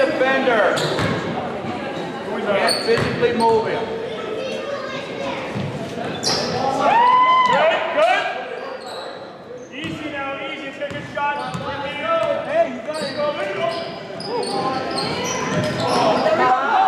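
Basketball being dribbled on a gym floor during a game, amid echoing voices of players and spectators.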